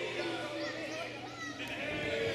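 Spectators' voices shouting and calling out over one another in a large hall, with drawn-out yells.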